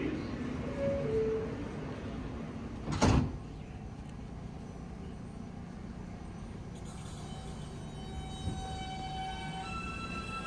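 New York City subway train standing at a station with a low steady rumble; its sliding doors close with one loud thump about three seconds in. Near the end the train starts to pull away, with a whine that rises in pitch in steps.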